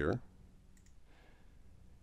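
A faint computer mouse click a little under a second in, selecting a menu item, over a low steady hum.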